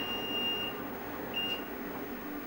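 Microwave oven's end-of-cycle beep: one long, steady high beep that stops well before a second in, then a short beep near the end, signalling that the timer has run down to zero.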